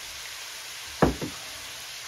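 Vegetables sizzling steadily in a skillet, with two quick knocks close together about a second in.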